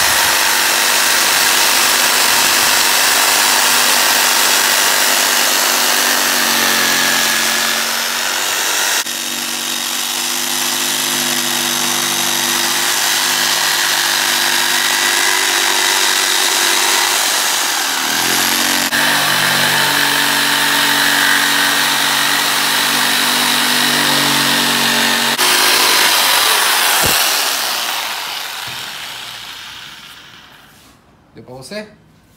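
Electric jigsaw with a narrow, fine scroll blade cutting curves through marine plywood, its motor running steadily with the pitch shifting a few times as the cut goes on. It slows and stops near the end.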